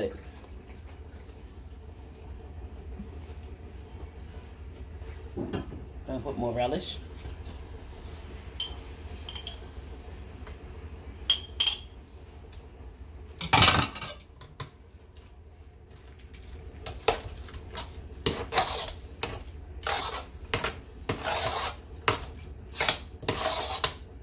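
A spoon scraping and knocking against a metal cooking pot as potato salad is mixed, with scattered clinks and one louder knock about halfway through. In the last several seconds the scrapes and taps come in a quicker, repeated run as the mixing picks up.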